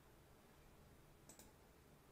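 Near silence, with a faint computer-mouse click or two a little over a second in.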